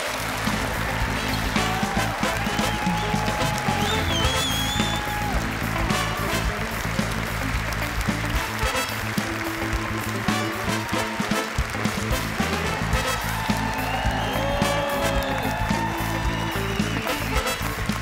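Music playing under sustained applause from a standing audience.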